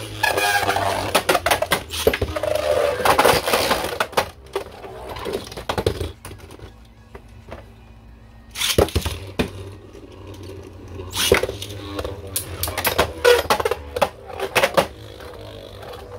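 Beyblade Burst spinning tops, Ultimate Valkyrie and Cyclone Ragnaruk, clattering and scraping in a plastic stadium, with sharp clicks as they hit each other and the wall. It is busiest in the first few seconds, goes quieter, then a sudden loud clatter comes just past halfway and more clicking follows.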